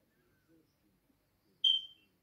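A single short, high-pitched beep or chirp about one and a half seconds in, over a very faint room background.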